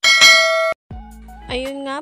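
Bright bell-like ding sound effect from a subscribe-button animation, ringing steadily for under a second and then cut off abruptly.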